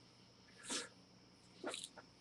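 Two short breath noises from a man, a quick intake or sniff, one a little under a second in and another near the end.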